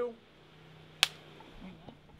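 Film clapperboard snapped shut once, a single sharp clack about a second in, marking the start of the take for picture-and-sound sync.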